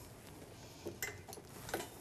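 A few light clicks and knocks of ECG electrodes being handled and set down on the ECG machine cart, with the last and loudest near the end.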